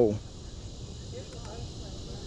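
Steady high insect chorus, an even, unbroken buzz.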